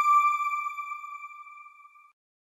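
TV channel logo sting: a single bright electronic chime tone ringing out and fading steadily, dying away near the end.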